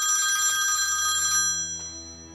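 Telephone ringing with a steady, high electronic ring that stops about a second and a half in. Low music comes in underneath as the ring ends.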